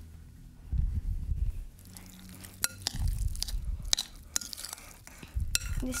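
A metal spoon stirring and mashing avocado in a glass bowl: soft squelching and dull thuds in three bouts, with a few sharp clinks of the spoon against the glass.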